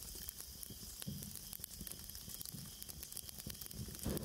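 Faint crackle and hiss over an uneven low rumble, a quiet ambient background bed.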